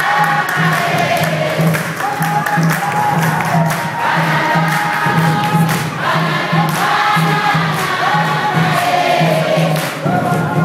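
A congregation sings a praise song together, many voices carrying one melody over a steady low drum beat of about three beats a second, with sharp percussive hits throughout.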